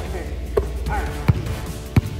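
A basketball dribbled on a hardwood gym floor: three bounces, about one every 0.7 seconds, over background music.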